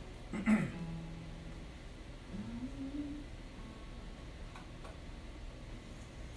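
A person's voice: a short vocal sound with a falling pitch about half a second in, then a low held hum, and a brief hum rising in pitch two to three seconds in, over quiet room noise.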